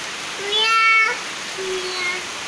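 Two drawn-out, meow-like calls, the first about half a second in and the louder, the second lower-pitched near the end, over a steady hiss of rain.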